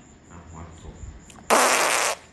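A short, forceful puff of breath blown close to a phone's microphone: a sudden hissing rush lasting about half a second, starting about one and a half seconds in.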